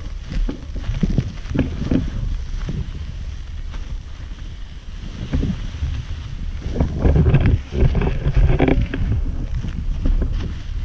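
Off-road inline skates with large pneumatic wheels rolling and striding through grass, a run of swishing strokes under a steady low rumble of wind on the camera microphone; the strokes are loudest and closest together a little after halfway.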